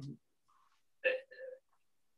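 Mostly silence on a noise-gated video call. About a second in, a man makes two short throaty vocal sounds, like small hiccups or clipped 'hm's, while pausing mid-remarks.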